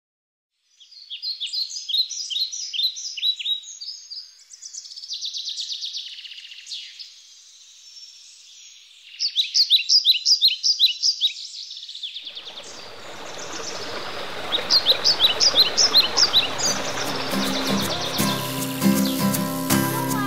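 A songbird singing in repeated phrases of quick, high falling notes. About twelve seconds in, the rush of a stream over rocks swells up beneath it. Acoustic music fades in near the end.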